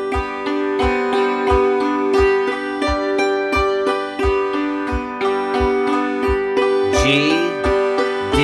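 Hammered dulcimer struck with two hammers, playing a rhythmic G-chord accompaniment with the strings ringing on, over a steady low beat of about three thumps a second.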